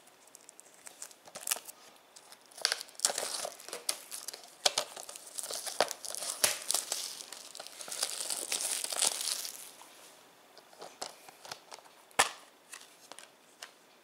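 Clear plastic shrink-wrap crinkling as it is torn and peeled off a Blu-ray case, for about nine seconds. Afterwards come a few sharp clicks from the plastic case being handled and opened, the loudest about twelve seconds in.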